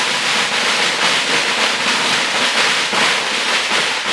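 A long string of Chinese firecrackers going off, the rapid bangs running together into one loud, continuous crackle.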